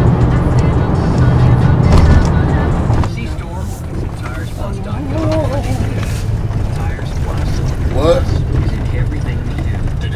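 Music with heavy bass, loudest in the first three seconds and quieter after, over the low rumble of a car driving.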